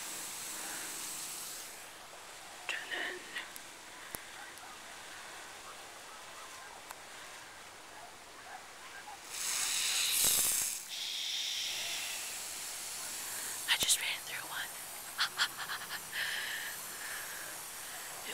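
Lawn sprinklers hissing as they spray, with a louder rush of noise about ten seconds in. Short clicks and low whispered voices follow near the end.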